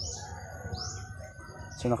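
Small birds chirping: a few short, high-pitched chirps that fall in pitch, repeating every half second or so.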